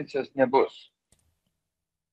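A person speaking for under a second, then a silent gap broken only by one faint click.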